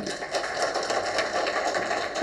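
Audience applauding steadily as a speech ends, starting suddenly.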